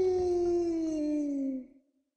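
A cartoon character's voice doing a wolf howl: one long held call that slowly falls in pitch and stops about one and a half seconds in.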